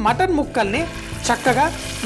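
Raw mutton pieces dropped into hot mustard oil spiced with whole garam masala, sizzling, the sizzle getting louder from about half a second in as the meat goes in. A voice is heard over it.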